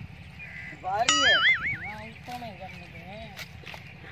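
A person's voice making a drawn-out, wavering wordless cry that rises sharply about a second in, followed by fainter, lower wavering vocal sounds.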